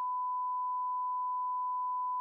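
A steady electronic beep: one pure tone, unchanging in pitch and loudness, that cuts off abruptly.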